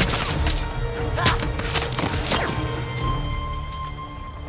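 Action-film soundtrack: a tense music score over a low rumble, broken by several sharp cracks and hits in the first two and a half seconds, then easing off.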